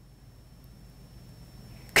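Faint room tone with a thin, steady high-pitched whine. A voice cuts in abruptly right at the end.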